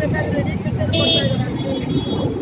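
A woman speaking into microphones over street traffic noise. A short, high-pitched vehicle horn toot sounds about a second in.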